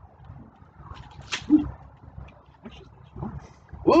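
Food and a small electric countertop grill being handled, with a single sharp clack a little over a second in and a few fainter clicks and scrapes after it.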